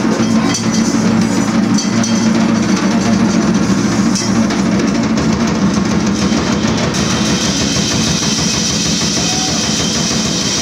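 Drum kit played in a dense, continuous free-improvised flurry of drums and cymbals, with a brighter cymbal wash setting in about seven seconds in.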